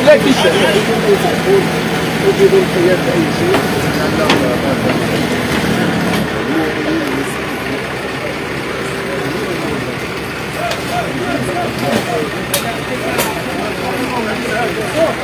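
Heavy machine's engine running steadily under a crowd's overlapping voices while a metal shop awning is torn down, with a sharp knock about four seconds in and two more near the end. The engine fades after about six seconds.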